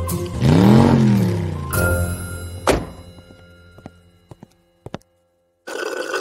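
Sound effects laid over background music: a loud swelling whoosh that rises and falls in pitch, then a single sharp thunk about two and a half seconds in, followed by a few faint clicks as the sound dies away.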